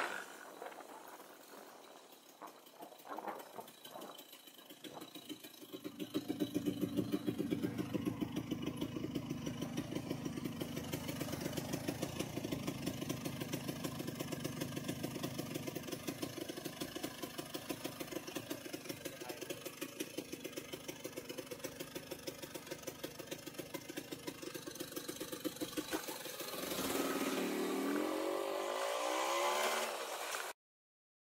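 Vintage Vespa VBB's two-stroke single-cylinder engine idling at a stop with a steady, even pulsing beat, then revving louder as the scooter pulls away near the end.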